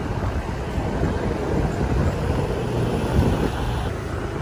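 Ride in the open back of a songthaew, a pickup truck converted to carry passengers: steady engine and road rumble, with wind buffeting the microphone.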